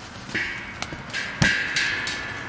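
A cymbal struck twice with a stick, about a second apart, ringing on after each hit; the second hit is louder.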